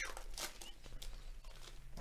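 Foil trading-card pack wrapper crinkling faintly as it is torn open and the cards are slid out, with a few soft crackles in the first second.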